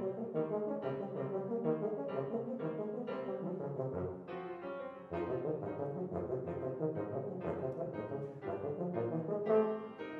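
Tuba and grand piano playing a classical piece together, with the music starting abruptly.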